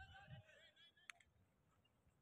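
Near silence on an open field, with faint distant voices in the first part and a single soft click about a second in.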